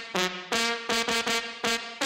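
Dance music played through a DJ set's PA: a riff of short, brassy horn stabs, about five a second, jumping in pitch from stab to stab.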